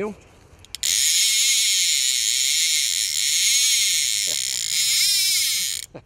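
Fly reel's click-and-pawl ratchet buzzing loudly and steadily for about five seconds as a hooked carp runs and pulls line off the reel. It stops just before the end.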